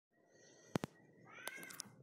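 Two faint quick clicks, then a brief, faint animal-like cry that rises and falls in pitch about a second and a half in.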